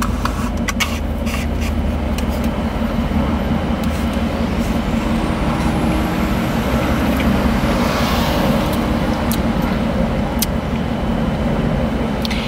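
Steady low hum of a car idling with its air conditioning running, heard from inside the cabin. A few sharp clicks near the start.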